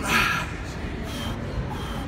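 A man's forceful, breathy exhale as he drives up out of a heavy barbell back squat, followed by a few shorter, fainter breaths between reps.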